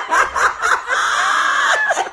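Two women laughing loudly together, breaking into a long, high, breathy laugh about a second in.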